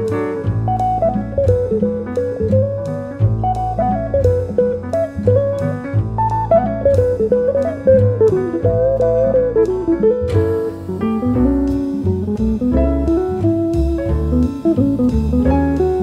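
Live jazz: an electric jazz guitar plays a flowing single-note line over bass and drum kit, with cymbal strokes growing busier about two-thirds of the way through.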